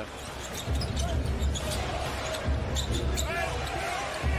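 Basketball game broadcast audio: arena crowd noise in a large hall, with a low rumble and short sharp ticks from play on the court.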